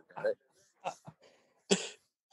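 A short spoken word, then a single short cough near the end.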